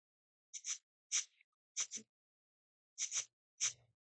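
A person sniffing: about eight short, quick sniffs in irregular groups, several in quick pairs, with silence between.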